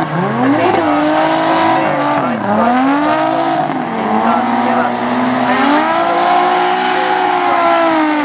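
Two drift cars in a tandem slide, their engines revving up and down repeatedly as the throttle is worked, over the squeal of sliding tyres.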